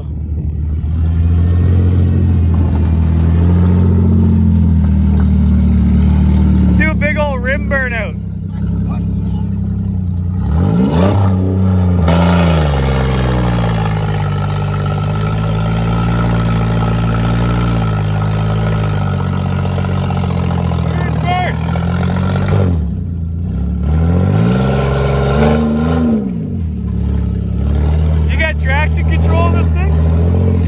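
Pontiac Grand Prix engine revving hard under load while its front wheel spins in the mud in a burnout. The revs hold high, drop and climb again several times, with brief squeals over the top.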